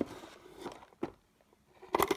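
Coloured pencils and small items being handled in a plastic organizer tray: a sharp click, a short rustle, then another click about a second in.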